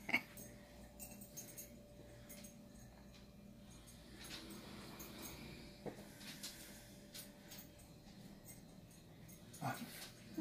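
Faint sounds of a pet dog, with a few light knocks and clicks and a faint steady hum running through most of it.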